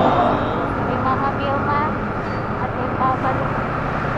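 Yamaha Sniper 155 VVA motorcycle engine running as it is ridden in traffic, mixed with steady wind and road noise on the rider's camera.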